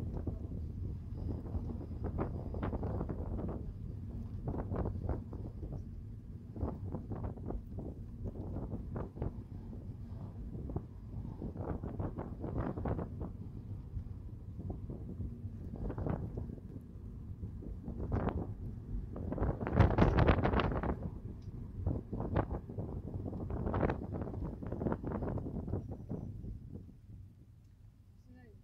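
Low road and tyre rumble inside a Lexus car's cabin while driving, with repeated gusts of wind noise on the microphone, the strongest about three-quarters of the way through.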